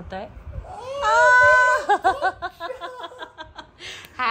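A baby's loud, high-pitched squeal of delight about a second in, held for about a second, followed by a quick run of laughter.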